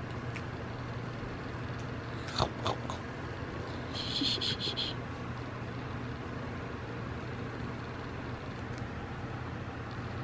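A cat mouthing and rubbing against a catnip fish toy, with a couple of soft knocks about two and a half seconds in, over a steady low room hum. A short run of high chirping pulses comes about four seconds in.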